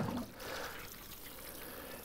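Water from a plastic watering can's rose sprinkling onto soil, a faint, steady trickle.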